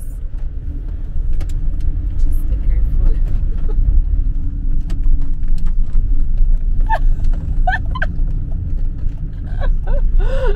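Motorhome driving in city traffic, heard from inside the cab: steady low engine and road rumble that swells a little about a second and a half in, with scattered light clicks.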